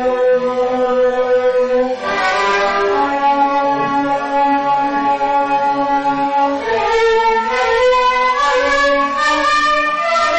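Instrumental passage of a Moroccan song, a bowed string ensemble playing long held melodic notes, with a new phrase entering about two seconds in and another near seven seconds.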